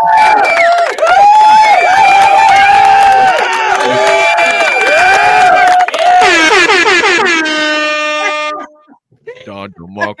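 Soundboard sound effect of air horns: overlapping wavering horn blasts for about six seconds, then one long horn note that cuts off shortly before the end.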